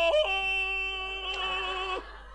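A man's long yodelling yell in the manner of a Tarzan call, given as a cry of pain when a loincloth with the knitting needles still in it is pulled on. It holds one note, flicks up briefly soon after the start, then settles on another held note that wavers toward the end.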